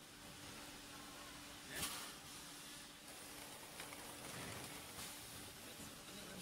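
Faint steady hum of a thermoforming vacuum packaging machine running, with one short sharp burst about two seconds in and a few light ticks later.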